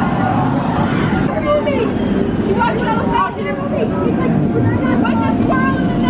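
Steel roller coaster train running along its track, a steady rumble, with people's voices and chatter over it.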